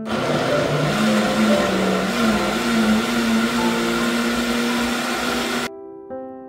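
Countertop blender running at full speed, grinding chopped ingredients to a purée. The motor hum rises slightly in pitch over the first couple of seconds as the contents liquefy, holds steady, then cuts off abruptly near the end.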